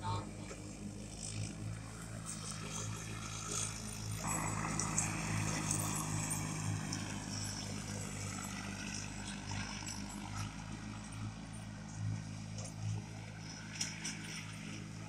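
John Deere 316 lawn tractor running steadily while it mows, a continuous engine drone. A higher whine swells about four seconds in and wavers slowly in pitch.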